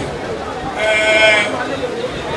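A man speaking into a microphone, holding one long, wavering syllable about a second in.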